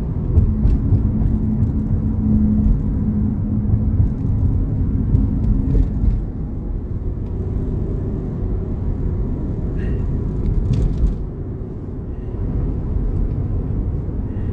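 Car running, its low rumble heard from inside the cabin, with a steady hum in the first few seconds and a few faint light clicks.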